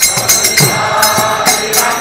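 Devotional kirtan: voices singing a Hindu prayer with small hand cymbals struck on a steady beat, about three strikes a second, and a hand drum.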